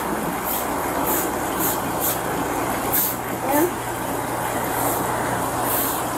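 Broom sweeping brick patio pavers in short, repeated strokes, roughly one or two a second, over a steady background hum picked up by a police body camera.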